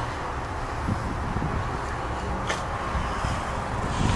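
Steady low rumble of outdoor background noise, with a faint click about two and a half seconds in.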